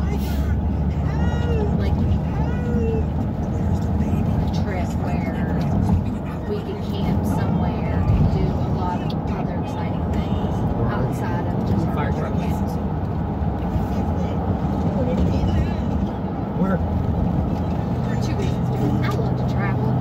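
Steady low road and engine drone inside a moving car's cabin, with indistinct voices in the background.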